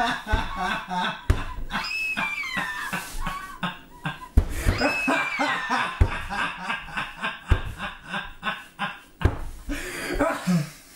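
People laughing, with two high-pitched shrieks that each slide downward in pitch over about a second and a half in the first half. In the second half comes a run of short, sharp knocks and clicks.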